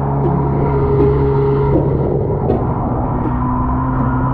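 Yamaha SuperJet stand-up jet ski engine running at a steady pitch under way, with the rush of water around the hull.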